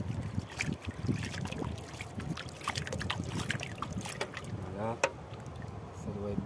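Water splashed by hand over a metal sluice box into a plastic gold pan, in irregular splashes, drips and trickles, as the sluice's gold-bearing concentrate is rinsed into the pan. A short voice sound comes near the end.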